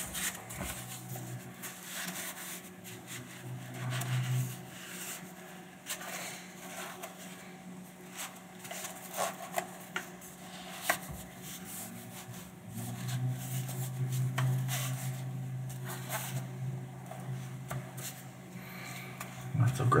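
Neoprene lens cover being worked onto a telephoto lens barrel by hand: soft rubbing and sliding of the fabric against the lens with scattered small taps and clicks. A low hum comes in twice, from about a second in and again for most of the second half.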